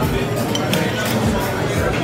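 Busy restaurant dining room: many diners chatter at once, with a few light clinks of dishes and cutlery.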